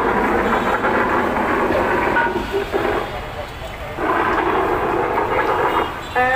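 Busy street noise: traffic and a crowd of voices mixed together, dropping and returning abruptly several times.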